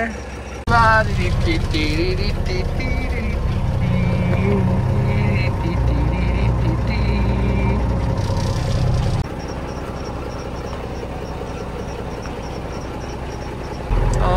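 Unimog diesel engine running hard with its pitch shifting as the front loader works. After about nine seconds it changes abruptly to a quieter, steady idle with a faint high ticking that repeats a few times a second.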